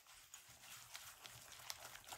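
Silicone-coated balloon whisk beating eggs and sugar in a ceramic bowl: faint, quick, rhythmic ticking of the whisk against the bowl.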